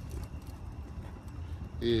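Steady low rumble of a vehicle heard from inside its cabin, with light handling knocks on the phone, and a man saying 'yeah' near the end.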